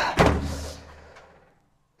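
Metal clunk of a Bayliss storm-proof greenhouse auto vent as its wax cylinder drops out of the adjuster, disengaging the opener. It is a sharp knock with a low ringing that fades out over about a second.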